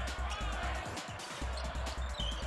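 Basketball dribbled on a hardwood court, with music playing underneath.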